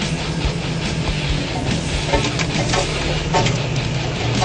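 Off-road Jeep's engine running, heard through a camera mounted on its hood, with a steady low drone and irregular rattling knocks.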